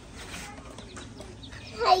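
Baby chicks peeping faintly in a cardboard carrier box, a scatter of short high chirps.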